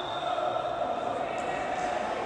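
Steady, echoing background noise of an indoor futsal court, with players and spectators but no clear ball strikes or whistle.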